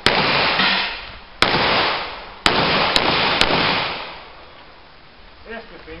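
Five pistol shots, the first three about a second apart and the last two quicker, each followed by a long fading echo.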